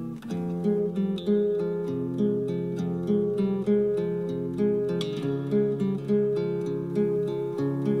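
Instrumental passage of a Flemish folk song with no singing: a plucked acoustic guitar playing a steady run of picked notes.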